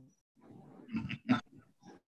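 A man's short, throaty non-word vocal sounds, ending in a questioning 'huh?' about a second in.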